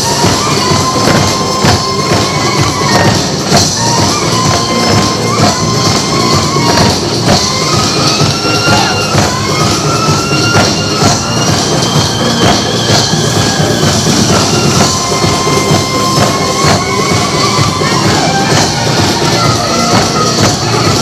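Korean folk music for sogo dance: small hand-held drums beaten in a dense, steady rhythm, with a high melody line that bends and slides in pitch over it.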